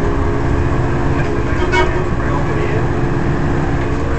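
City bus running, heard from inside the passenger cabin: a steady engine drone over a low road rumble.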